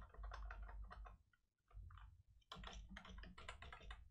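Faint computer keyboard typing: a quick run of keystrokes in the first second or so, a pause, then another run from about two and a half seconds in, over a low steady hum.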